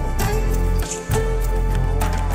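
Background music with a steady bass, sustained melodic tones and a regular beat.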